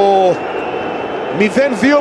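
A man's sports commentary in Greek, with a pause of about a second in the middle where only a steady stadium crowd noise is heard underneath.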